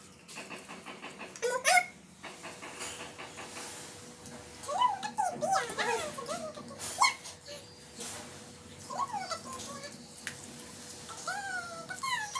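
Young children's high-pitched voices: short squeals, exclamations and giggles in bursts. In the first second or so, a quick run of small wet clicks from pink slime squeezed in the hand.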